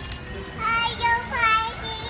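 A toddler's high-pitched voice, two drawn-out wordless vocal sounds with sliding pitch.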